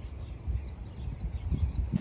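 A small bird chirping repeatedly in short high notes over a low, gusty rumble of wind on the microphone.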